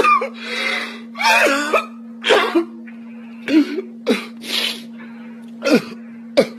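A boy fake-crying into his hands: a run of short sobbing bursts, many falling in pitch, with one longer wail early on and shorter sobs after it, over a steady low hum.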